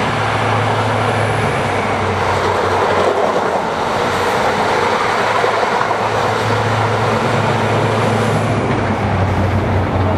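An HST with Class 43 diesel power cars passing at speed, a steady engine note under dense rushing wheel-and-rail noise. It cuts off suddenly at the very end.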